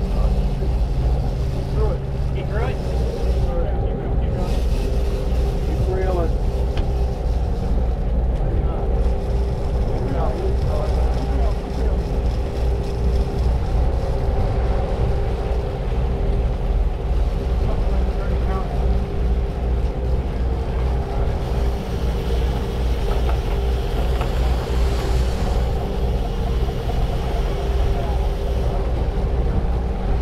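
Sportfishing boat's inboard engines running steadily under way, a constant low drone with water rushing along the hull.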